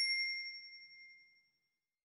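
Notification-bell chime sound effect from a subscribe-button animation: one high, bell-like ding ringing out and fading away by about a second and a half in.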